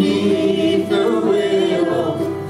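A woman and a man singing an old-time country song in harmony, accompanied by an autoharp and a guitar played flat on the lap with a slide.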